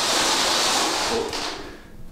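Wheels of a rolling exercise roller running along a hardwood floor: a steady rushing noise that fades away near the end.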